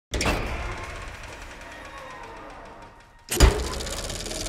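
Dark cinematic trailer sound design. A sudden hit opens it and fades slowly over about three seconds into low wavering tones. A second, louder impact with a deep boom strikes about three and a half seconds in.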